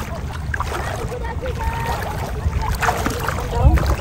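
Shallow seawater sloshing around the legs of someone wading through it, under a steady low rumble, with faint voices in the middle and a louder low thump near the end.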